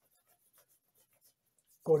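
Near silence with a few faint soft handling ticks, then a man's voice starting near the end.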